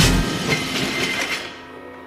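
A loaded barbell with bumper plates hitting the lifting platform, then the plates and bar rattling as they settle. The rattle dies away over about a second and a half.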